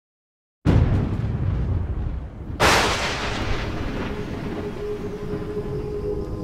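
A sudden deep boom with a long rumble, then a second sharp crash about two seconds later that dies away into a steady hiss. Soft ambient music tones come in near the end.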